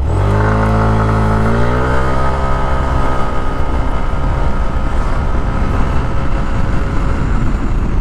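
Yamaha NMAX 155 scooter's single-cylinder engine accelerating hard from a standstill. The engine note rises over the first two seconds, then holds at high revs while the road speed climbs, as the aftermarket Speedtuner CVT pulley and spring set lets the engine rev up at once: 'very angry'.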